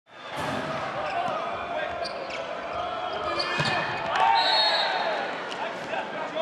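Volleyball rally in an indoor arena: a jump serve and several sharp hits of the ball over constant crowd noise. About four seconds in, a referee's whistle blows briefly, ending the rally, and the crowd grows louder.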